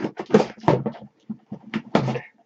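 Scissors cutting through packing tape on a cardboard shipping box as the box is handled: a quick run of sharp scrapes and knocks, loudest in the first second.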